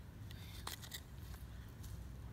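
Faint scrapes and a few light clicks of a metal hand digger working into soil and grass roots, over a low steady rumble.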